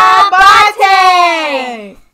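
A woman and children singing loudly without music, in short phrases that end in one long note sliding down in pitch.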